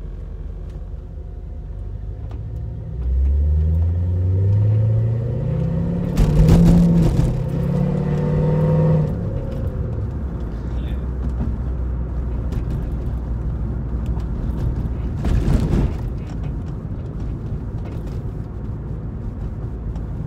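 Corvette V8 engine pulling away from low speed, heard from inside the cabin: its pitch rises steadily, breaks at a gear change about six seconds in, rises again, then settles into an even low drone at cruising speed. A short thump comes about fifteen seconds in.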